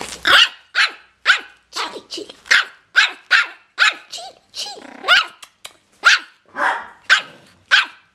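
Havanese puppy barking in a steady run of short, high-pitched yaps, about two a second: play barking while crouched in a play bow.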